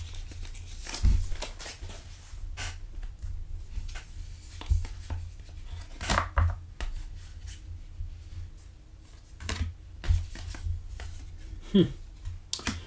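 Trading cards being flipped through and slid against one another by hand, with short sharp clicks and rustles of card stock and the torn paper pack wrapper, over a low steady hum.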